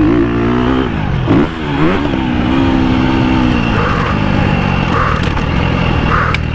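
KTM motocross bike engine running under throttle on a dirt track. Its note dips about a second in, climbs again, holds steady, then falls away into a rougher sound after about three and a half seconds.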